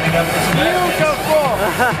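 Many voices in a large echoing arena, people calling out and talking over each other with a low steady hum beneath, and a laugh near the end.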